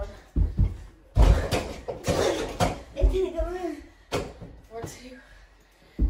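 Several dull thuds of a mini basketball hitting a door-mounted mini hoop and the floor during play, with boys shouting in between.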